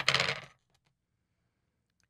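Small metal scissors set down on a hard surface: a sharp metallic clink at the very start and a brief rattle lasting about half a second.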